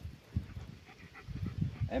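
A dog panting, over low, irregular scuffs of footsteps on dry ground.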